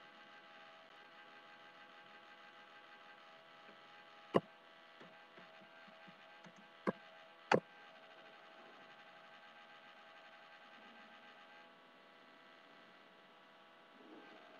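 Faint steady electrical hum with a few sharp computer keyboard and mouse clicks near the middle, two of them just over half a second apart, as a search is typed in and run.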